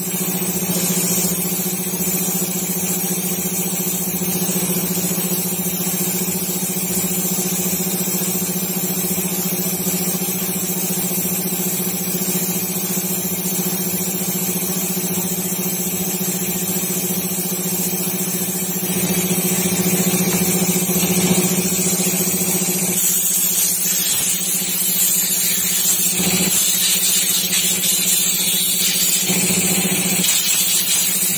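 Compressed air hissing from a blow gun as it is worked over a Honda Activa 4G carburettor, over a steady machine hum.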